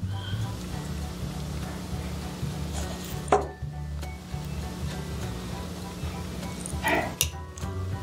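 Wire cutters snipping the end of flexible bead-stringing wire close to a crimp bead: one sharp snip about three seconds in. A few light clicks of small tools near the end.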